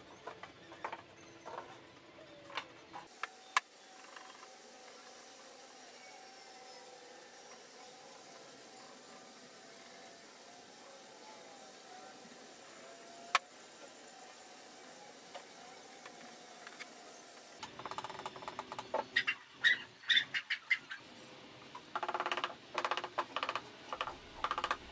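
Wooden frame pieces knocking against each other and the workbench in a few sharp taps, then a long faint stretch, then a quick run of clatter and metallic clinks near the end as bar clamps are fitted across the glued frame.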